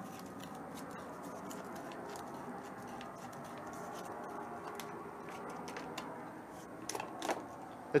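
Aviation tin snips cutting around the rolled edge of a steel spin-on oil filter can: a quiet, steady run of small clicks as the blades bite through the thin metal, with a couple of louder snips near the end.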